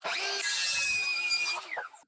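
Circular saw cutting through a pine 2x4, starting suddenly and running steadily through the cut. Its blade then spins down with a falling whine near the end.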